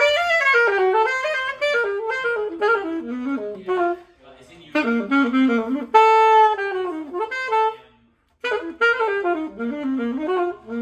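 Yamaha YAS-62 alto saxophone played in melodic phrases, with a long held note about six seconds in and short breaks for breath around four and eight seconds in. This is a play test after the keys were reseated and the keywork regulated, with no leaks on the C and E-flat keys.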